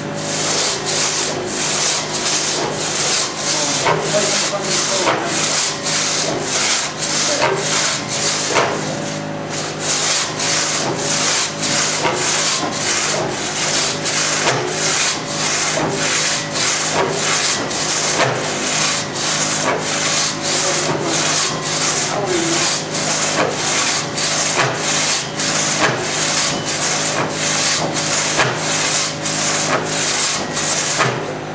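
Two-man crosscut saw cutting through a log, each push and pull a rasping stroke of the teeth in the wood, in a steady rhythm of about three strokes every two seconds.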